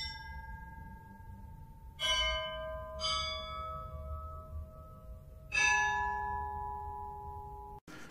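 A run of four bell strikes, the second and third a second apart, each chiming with several clear ringing tones that fade slowly until the next strike, over a faint low hum.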